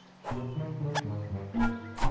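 Animated-film soundtrack: orchestral music that comes in about a quarter second in after a quiet start, with sharp cartoon sound effects, including a quick up-and-down pitch glide about a second in.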